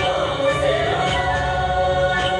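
Many voices singing together, a Tibetan gorshey circle-dance song, on long held notes.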